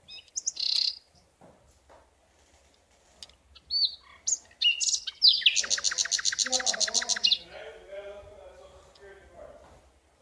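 A small bird chirping in short high calls, then a rapid even trill of about ten notes a second lasting about two seconds in the middle.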